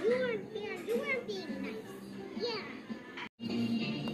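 A child's high, sing-song voice over background music, broken off by a brief total dropout about three seconds in, after which different music carries on.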